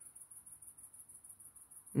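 Faint, high-pitched insect trill: a steady rapid pulsing of about ten pulses a second.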